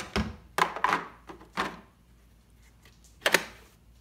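Plastic knocks and clicks from handling a DeWalt cordless leaf blower and its 20V battery pack: a few light taps and clunks in the first two seconds, then one sharper knock about three seconds in.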